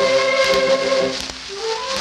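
Music from an old Victor 78 rpm record of a children's song with orchestral accompaniment: a held note, a brief dip about a second and a half in, then a short rising phrase, over steady surface hiss.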